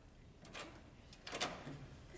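Wooden double door being unlatched and pushed open: a faint click about half a second in, then a louder clatter of latch and door a second later.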